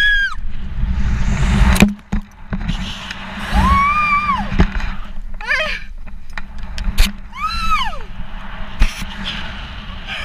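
A woman screaming during a rope-jump free fall and swing: about four long, high-pitched cries, one wavering. Wind rushes loudly over the helmet camera's microphone, strongest in the first two seconds and dropping off suddenly about two seconds in, with a few sharp knocks from the rope and gear.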